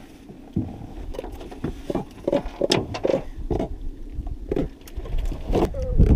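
Handling noise as a blue catfish is worked free of the hook in a landing net and lifted out: a run of irregular knocks, clicks and rattles from the net, hook and fish.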